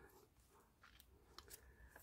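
Near silence, with a few faint, soft ticks in the middle from journal paper pages being handled.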